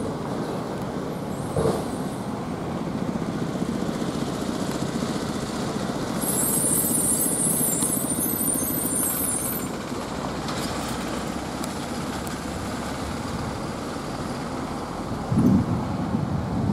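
Goods truck engine running as the truck drives past, getting louder in the middle as it comes closest. A high hiss of air lasts about three seconds in the middle, and a short knock comes early on.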